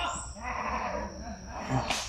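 A faint animal call with a wavering pitch, lasting about a second.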